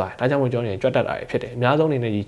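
A man talking steadily into a lapel microphone; only speech, no other sound.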